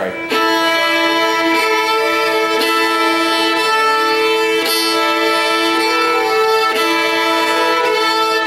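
Fiddle bowing a sustained two-note double stop, the E fingered on the D string sounding against the open A string, as a tuning-in drill for unisons and double stops. Long, even bow strokes change direction about every two seconds.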